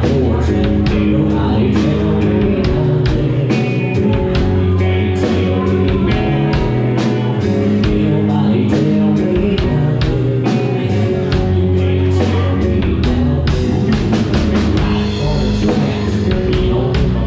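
Live rock band playing electric guitars, electric bass and a drum kit, with a steady beat.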